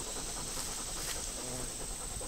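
A dog panting steadily, with a thin, steady high-pitched tone running behind it.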